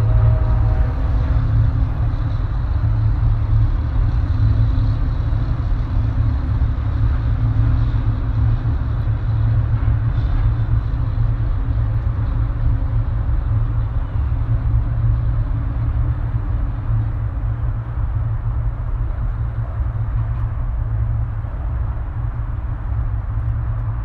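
A steady, low outdoor rumble runs throughout with no clear single event. A music track fades out in the first second or so.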